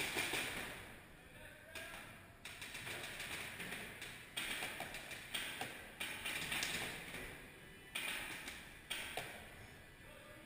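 Paintball markers firing across an indoor field: scattered single pops every second or two, each trailing off in the echo of the large hall.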